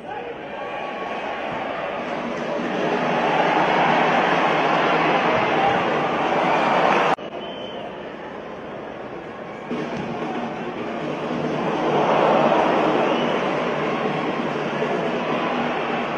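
Football stadium crowd noise, a dense roar of many voices that swells and fades, breaking off abruptly about seven seconds in and swelling again around twelve seconds in.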